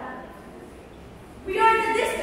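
A child's voice declaiming: a pause of about a second and a half, then speech starts again loudly near the end.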